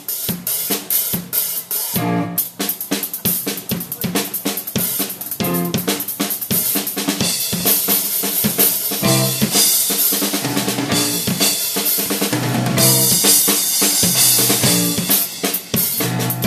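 Live funk band with the drum kit to the fore: a busy groove of snare, bass drum, rimshots and cymbals over electric bass and the rest of the band. The cymbals grow brighter and fuller about halfway through.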